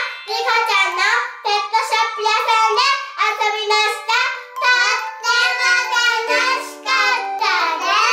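Two young children singing together in high voices over light background music.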